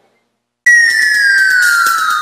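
Transition sound effect: a sudden loud whistle tone that slides steadily down in pitch over a hiss, starting about half a second in.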